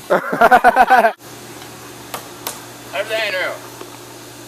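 A loud burst of excited voices that cuts off abruptly about a second in, followed by a steady low hum with a brief shout about three seconds in.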